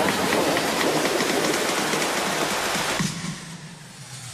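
A hissing white-noise sweep within electronic background music, with faint ticks in the hiss. It drops away about three seconds in.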